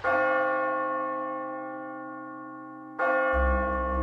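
A bell struck twice, about three seconds apart; each strike rings with many steady tones and slowly fades. A deep low drone comes in shortly after the second strike.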